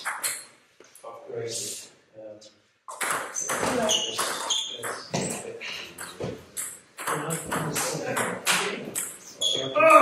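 Table tennis rally: the ball clicking off the bats and the table in a quick, irregular run of hits.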